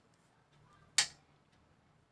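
A single sharp click about a second in, from cards and a small plastic packet being handled, with faint rustling just before it.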